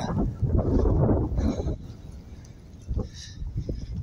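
Wind rumbling on the microphone during a walk, with a wordless vocal sound from the person filming in the first second or two; it drops quieter about two seconds in, with a few faint knocks near the end.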